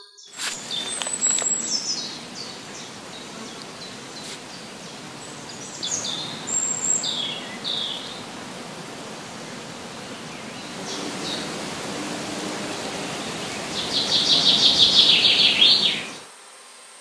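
Woodland birds calling and singing over a steady hiss of outdoor ambience, with short high calls scattered through and a louder run of rapid high chirping near the end.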